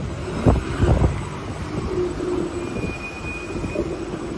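Steady city street traffic noise, with a couple of heavy low thumps about half a second and a second in and a short high squeal near the end.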